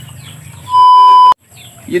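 A loud electronic beep: one steady tone of about 1 kHz lasting just over half a second, cutting off abruptly.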